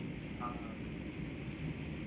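Car cabin noise while driving: a steady low rumble of engine and road. A short vocal sound comes about half a second in.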